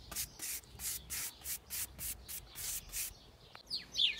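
A bristle paintbrush stroking oil onto the wooden slats of a teak garden bench: a quick, even run of swishing strokes, about three a second, that stops about three seconds in. A bird chirps near the end.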